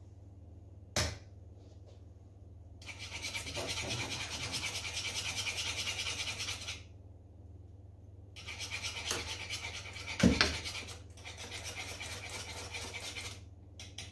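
Wire whisk beating thin teff batter in a small metal saucepan on the hob: fast, even scraping strokes in two spells of about four and five seconds. A sharp click comes about a second in, and a loud knock of the utensil on metal falls in the middle of the second spell.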